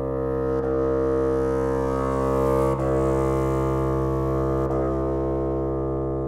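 Bassoon holding one low sustained note, a steady drone that grows louder toward the middle and eases off near the end, broken three times by brief dips.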